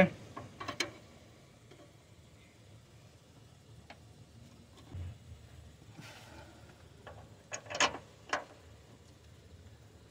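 A few sharp metal clicks and knocks from hand tools in the engine bay, mostly quiet between them, with a cluster of three clicks near the end.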